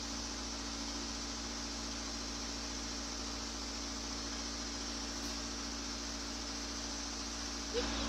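Excavator diesel engine idling: a steady, unchanging hum under an even hiss.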